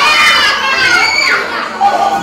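A group of young children calling out and shouting together in high voices, loud at first and dying down about one and a half seconds in.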